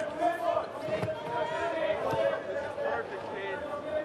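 Indistinct voices talking and calling out over a steady hum, with no clear single sound standing out.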